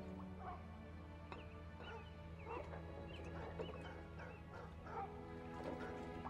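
Film soundtrack: soft sustained music with many short, high animal calls repeating over it for several seconds.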